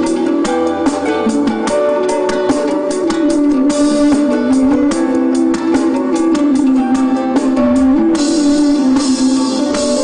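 Live band music: guitars over a drum kit with a steady beat, the melody moving in the middle range. Cymbals swell up about four seconds in and again after eight seconds.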